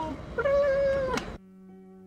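A cat meowing: two drawn-out meows that fall in pitch at the end. The second is cut off abruptly about a second and a half in, and soft piano music with held notes follows.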